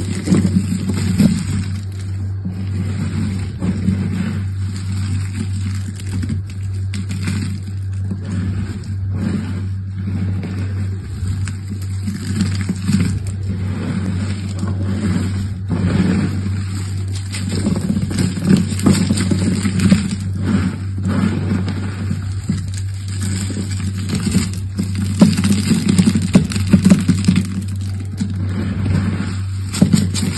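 Dry carved soap shavings and small soap cubes crunching and crackling as hands scoop, squeeze and drop handfuls of them, louder handfuls near the end. A steady low hum runs underneath.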